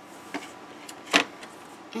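Quiet room tone with a faint click, then one sharp tap a little over a second in, as small hard objects are handled on a table.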